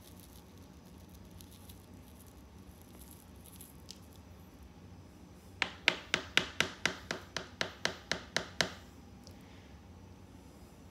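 A plastic measuring spoon scraping faintly through granular potting soil, then tapped quickly and sharply against the plastic pot, about five taps a second for some three seconds beginning a little past halfway.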